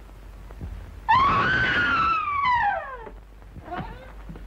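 A woman's terrified scream: one long cry of about two seconds that rises and then falls in pitch. It plays over the steady low hum of an old film soundtrack.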